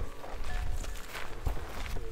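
Footsteps of people walking, a series of irregular soft knocks over a low rumble.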